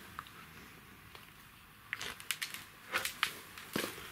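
Quiet room tone, then from about halfway a short run of scattered clicks and rustles, the handling noise of someone moving about with the camera.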